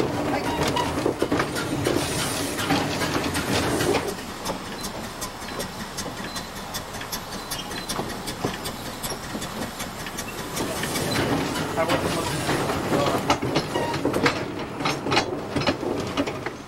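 Narrow-gauge steam locomotive running, with clattering and the click of wheels on rail. The sound drops after about four seconds and builds again near the end.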